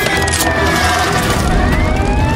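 A siren wailing, its pitch falling slowly and then rising again, over the low rumble of a car engine.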